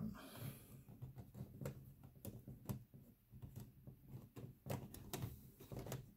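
Plastic LEGO Technic parts knocking and clicking against each other as a tray built from Technic frames is slid by hand into the bottom of the sorter's frame: a series of light, irregular clicks.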